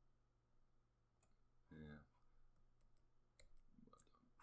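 Near silence with a few faint, scattered computer mouse clicks over a low steady hum. A short murmured vocal sound comes just under two seconds in.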